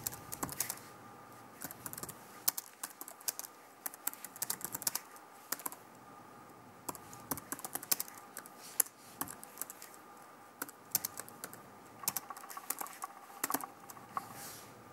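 Typing on a computer keyboard: quick runs of clicking keystrokes with short pauses between them.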